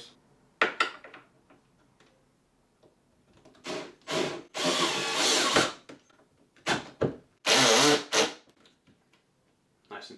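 Cordless Milwaukee drill driving screws for a shelf bracket, run in about four short trigger bursts, the longest about a second.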